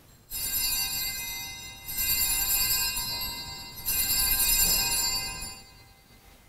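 Altar bells rung three times, about two seconds apart, each ring fading before the next: the bells that mark the elevation of the chalice at the consecration.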